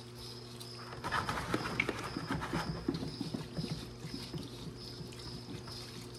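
Hands rubbing and shaking a sample of about 250 bees in a metal mesh strainer to knock the varroa mites loose: a dry, scratchy rustle of many small clicks that starts about a second in and tapers off after about three seconds. A steady low hum with a faint high whine runs underneath.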